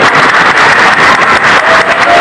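Audience applauding loudly, a dense patter of many hands clapping.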